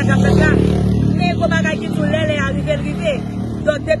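A woman talking in the street over a steady low rumble of road traffic, with a motor vehicle passing about half a second in.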